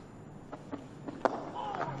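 A single sharp crack of a cricket bat striking the ball, a little over a second in, over faint background noise.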